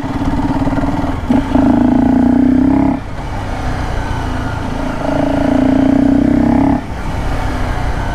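Honda CBR250R's single-cylinder engine, breathing through a BMC performance air filter, pulling at low speed: two stretches of louder, steady-pitched throttle, each about one and a half to two seconds, each cut off suddenly as the throttle closes.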